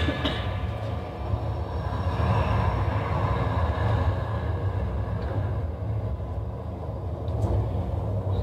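Low steady rumble from a film trailer's soundtrack playing over a hall's loudspeakers, its higher part thinning out over the last few seconds as the trailer ends.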